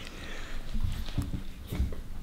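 A round stainless-steel cutter pressed hard by hand into rolled salt dough against a tabletop, giving a few short, dull, low knocks and creaks.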